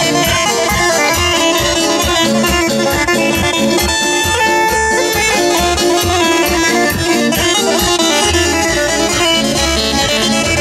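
Bosnian izvorna folk music for the kolo circle dance, with a steady driving beat, played loud over large loudspeakers.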